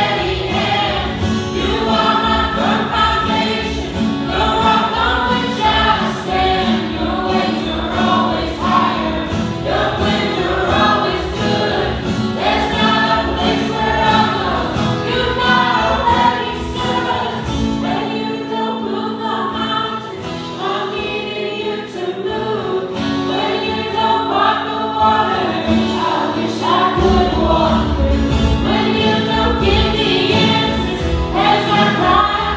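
Live worship band singing a contemporary Christian song: several male and female voices together over acoustic and electric guitars and a steady low beat. Past the middle the low beat drops out for several seconds, then comes back strongly near the end.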